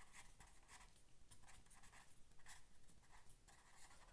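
Faint scratching of a pen writing words on paper, in short irregular strokes.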